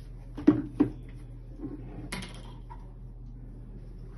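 Two hard plastic knocks close together, then softer clatter and a short rustling scrape, as a plastic water tank is lifted off a countertop appliance and handled. A steady low hum runs underneath.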